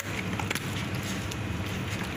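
A steady low hum in the background, with faint soft squelches and clicks from a gloved hand rubbing marinade into raw chicken pieces in a plastic bowl.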